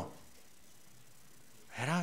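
A pause in a man's speech holding only faint, steady room hiss. His voice comes back near the end.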